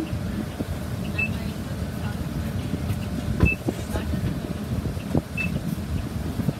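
City bus idling at a stop, a steady low rumble heard from inside the cabin. There are scattered knocks as passengers board and move past, the loudest about midway, and three short high beeps spaced about two seconds apart.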